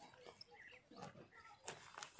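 Near silence, with a few faint clicks and some short, faint animal calls.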